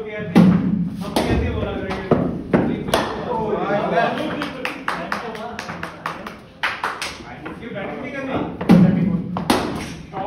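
Sharp knocks and thuds of indoor cricket net practice: a cricket ball striking bat, mat and netting, with two heavier thuds, one about half a second in and one near the end. Voices carry in the background.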